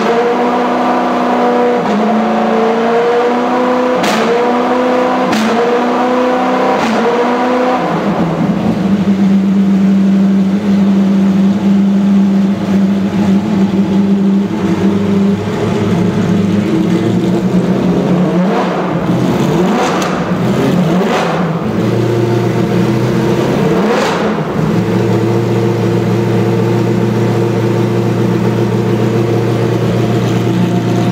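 Matech Ford GT GT1 race car's V8 running while stationary during warm-up. For the first eight seconds the engine speed rises and falls about once a second, with a few sharp clicks. It then holds a higher, steady speed, changes speed a few times later on, and settles into a steady lower run near the end.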